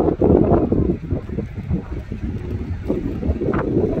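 Wind buffeting a phone microphone, an uneven low rumble that surges in gusts.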